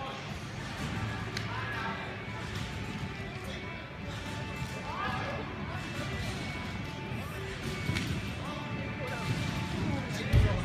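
Competition trampoline in use: a soft thud from the bed every second or two as the gymnast bounces through a routine, over the murmur of voices and background music in a large hall.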